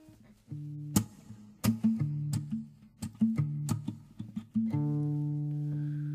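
Acoustic guitar strumming chords with sharp accented strokes, the song's opening before the vocals come in. A long chord is held near the end.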